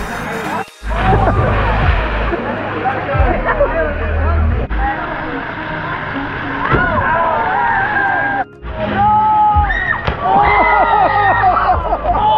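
Background music with a steady low beat under many young voices shouting and chattering at once. The sound drops out briefly twice, under a second in and about eight and a half seconds in.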